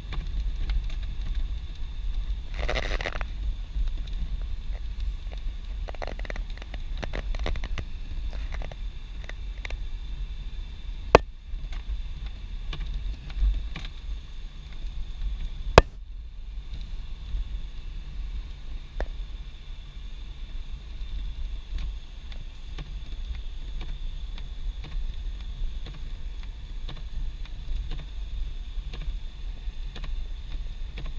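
Inside a car driving slowly on a snow-covered street: a steady low rumble of engine and tyres, with a brief hiss a few seconds in and two sharp clicks about four seconds apart near the middle.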